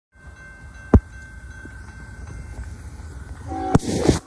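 Norfolk Southern freight train rolling past with a steady low rumble, a sharp knock about a second in and a thin steady high tone above it. Near the end a short horn chord sounds, followed by a loud burst of noise.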